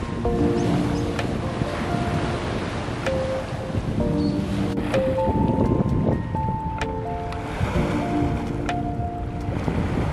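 Background music playing over the steady wash of small sea waves breaking at the shore's edge.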